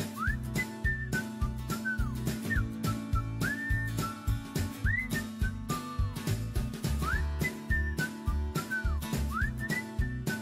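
Background music: a whistled melody that glides between notes over a steady beat and bass.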